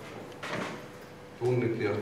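A man's voice speaking, broken by a pause with a brief soft noise about half a second in, then speech again from about a second and a half in.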